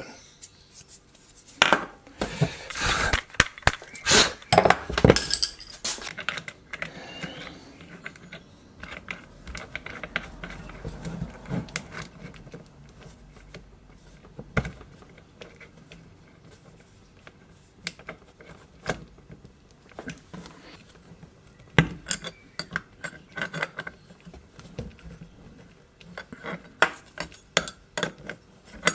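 Metal clinking and scraping of open-end spanners and then water-pump pliers on a router's collet nut and spindle, as the collet is tightened hard so the bit won't slip out. There are bursts of clinks in the first few seconds, a single knock partway through, and a busier run of clinks near the end.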